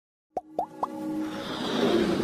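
Animated logo intro sound: three quick popping blips about a quarter second apart, each sliding up in pitch, followed by a swell of electronic music that grows louder.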